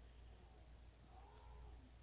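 Near silence: room tone with a low hum, and one faint, short call that rises and falls about a second in.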